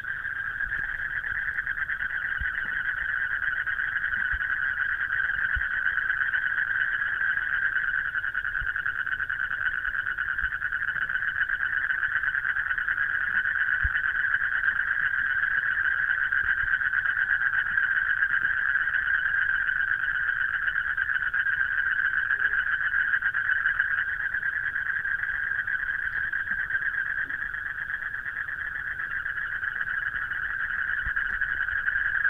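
A steady, unbroken chorus of night-calling animals, a dense high buzzing drone held at one pitch throughout.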